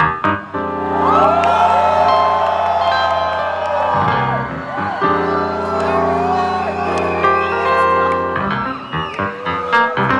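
Live soul music: sustained keyboard chords over a deep held bass, with concert audience members whooping and crying out in long wavering calls. The chord changes about four seconds in and again near the end.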